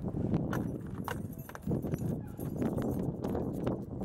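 Footsteps and shuffling movement on parking-lot pavement beside a car, with many short knocks and rustling on the handheld microphone.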